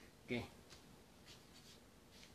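Faint rustling and sliding of a sheet of paper handled on a tabletop.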